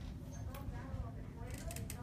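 Faint, indistinct talking over a steady low rumble, with a quick cluster of sharp clicks about one and a half seconds in.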